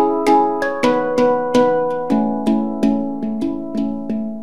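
Handpan (steel hand drum) played with the fingers: a steady run of struck notes, about three to four a second, each ringing on and overlapping the next. The lowest note drops a step about halfway through.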